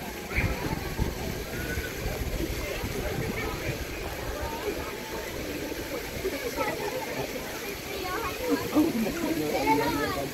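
Indistinct chatter of several people talking around, with no single clear voice, over a steady rushing background noise; a few voices come a little closer and louder near the end.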